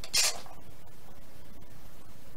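Steady low room hiss, with a short breathy hiss about a quarter of a second in.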